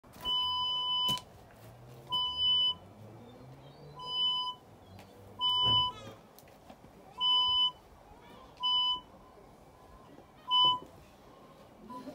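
Radiodetection C.A.T4 cable avoidance tool giving a series of seven electronic beeps, each about half a second long, at slightly uneven gaps of about a second and a half as it is swept over the paving.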